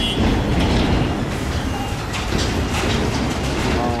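Loud, steady low rumble of heavy machinery.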